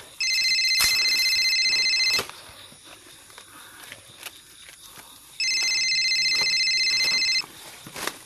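A telephone ringing twice, each ring a high, rapidly trilling tone about two seconds long, with a pause of about three seconds between the rings. Faint clicks and rustling fill the gap.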